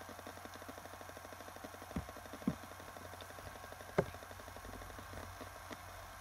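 Laptop hard drive running faintly with a steady hum and a few sharp clicks, about two, two and a half and four seconds in. The drive keeps trying to spin down to sleep every thirty seconds or so; the owner cannot tell whether the drive, the motherboard or the EFI firmware is at fault.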